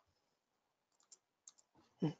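Near silence with a few faint computer mouse clicks, a little past a second in.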